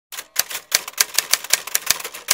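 Typewriter keys clacking as an intro sound effect: a quick, slightly irregular run of sharp clicks, about six a second.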